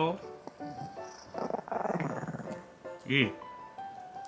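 Chihuahua growling over a chew bone, a rough, rumbling growl lasting about a second, guarding the bone from its owner. A short, louder sound follows just after three seconds in.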